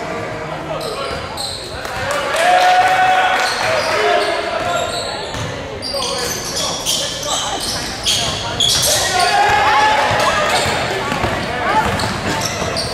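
Basketball bouncing on a hardwood gym floor during play, with the voices of players and spectators echoing in the large hall.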